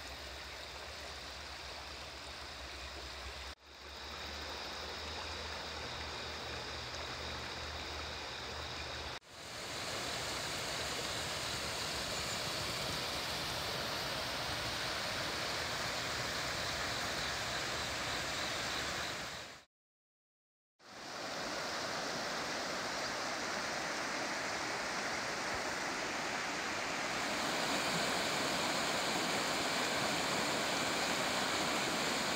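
A shallow stream runs over stones and gravel in a steady rush of water. The sound comes as several separate takes with abrupt breaks between them, including about a second of silence two-thirds of the way through.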